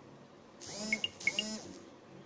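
Two quick strokes of a duster or cloth wiping a whiteboard, each about half a second long, with short squeaks as it rubs on the board surface.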